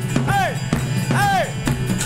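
Live worship band playing: drum kit and acoustic guitar over a held bass note, with two short rising-and-falling vocal cries between sung lines.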